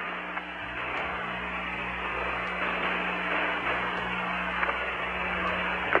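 Steady radio static hiss with a low hum on the Apollo 14 air-to-ground voice channel, with no one transmitting.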